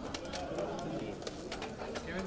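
Overlapping chatter of a small crowd talking at once, no single voice clear, with a few sharp clicks scattered through it.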